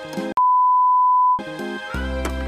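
Background music cut off by a loud, steady one-second beep, a single pure tone of the kind edited in as a censor bleep, after which the music picks up again.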